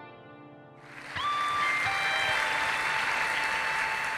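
The tail of the show's theme music fades out, and about a second in a studio audience breaks into steady applause, with a few held music notes sounding over the clapping.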